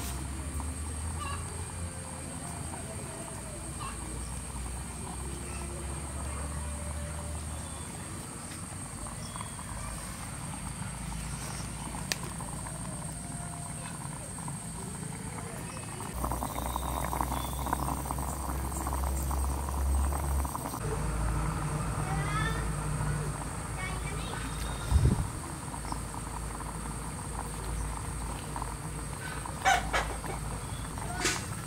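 Quiet outdoor ambience with faint, indistinct voices and scattered small sounds over a low hum, and a single thump a little after the middle.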